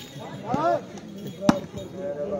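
A volleyball struck hard by hand: one sharp smack about one and a half seconds in. Just before it comes a short shout whose pitch rises and falls.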